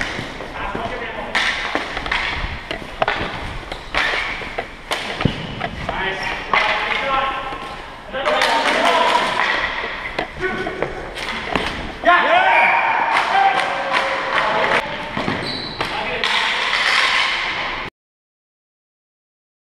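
Floor hockey play in a gym: sharp clacks and knocks of plastic stick blades striking the ball and each other, with players' shouts and calls across the court. The sound cuts off abruptly near the end.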